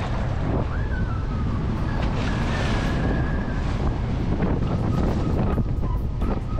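Strong wind buffeting the microphone over a motorboat running through choppy water, with water rushing along the hull. A faint thin high whine comes and goes.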